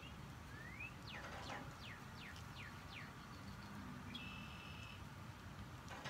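Faint birdsong in the background: a short rising whistle, then a run of about six quick high notes, each falling in pitch, about two a second, then a brief steady high note later on.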